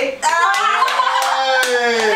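Excited cheering: a long, drawn-out shout from women's voices with hand clapping, celebrating a dart that has just hit a prize zone.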